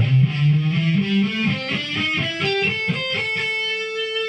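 Electric guitar playing the A minor pentatonic blues scale up from the fifth fret, one plucked note at a time, climbing steadily and ending on a held top note.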